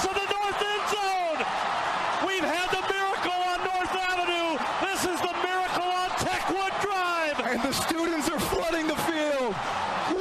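Loud, long-held yells from excited voices over a cheering stadium crowd.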